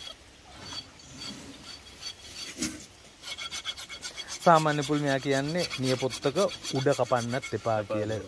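Steel hand file rasping across an elephant's toenail in quick, regular back-and-forth strokes, faint at first and louder from about three seconds in, as overgrown nail is filed down. A man's voice comes in over the later strokes.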